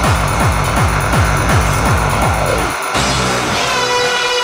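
Hardcore gabber music: a rapid run of distorted kick drums, each falling in pitch, over held synth tones. The kicks cut out about three-quarters of the way in, leaving the synth tones as a breakdown begins.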